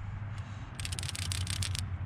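A removed PCV valve being shaken by hand: a quick rattle of fast clicks lasting about a second, made by its internal check valve moving freely. It is taken as the sign that the valve still works fine.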